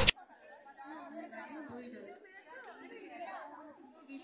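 Faint background voices of several people talking, with no one voice standing out.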